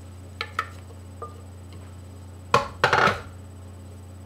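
Wooden spoon scraping and knocking in a blender jar to get the last of the green sauce out: a few light clicks, then two sharp knocks close together about two and a half seconds in, over a steady low hum.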